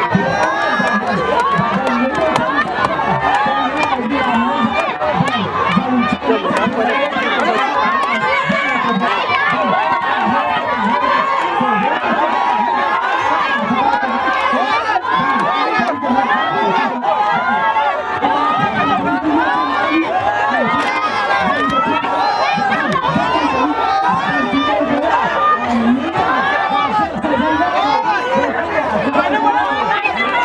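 A large crowd of many voices talking and calling out at once, in a dense, unbroken babble.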